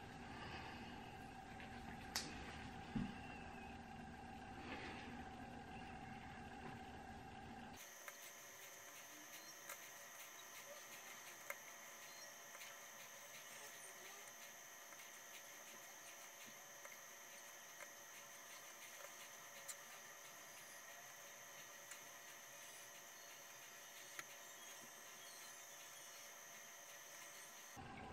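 Near silence: faint room tone with a few soft, isolated clicks. The background hum changes abruptly about eight seconds in.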